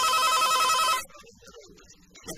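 Telephone ringing: a loud electronic trill alternating rapidly between two tones, which cuts off abruptly about a second in.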